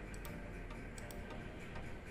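A series of faint, irregularly spaced computer mouse clicks as merge fields are picked from a menu.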